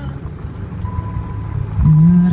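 Low rumble of car road and engine noise heard inside the cabin during a break in the music. A faint steady tone comes in about a second in, and music starts again with a low note near the end.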